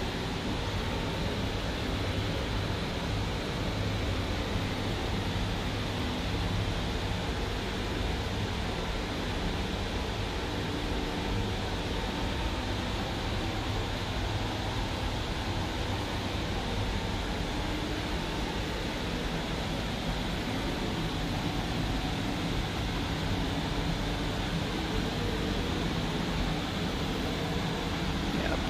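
Steady room tone: an even hum and hiss from air conditioning or ventilation, with no clear events.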